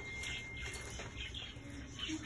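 Faint chirping of caged birds over room background, with a thin steady high tone that stops about halfway through.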